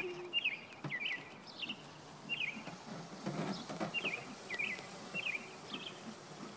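A small songbird chirping over and over, short hooked chirps about two a second, over low outdoor noise with a few faint knocks.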